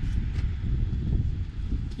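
Wind buffeting the microphone outdoors: an irregular low rumble.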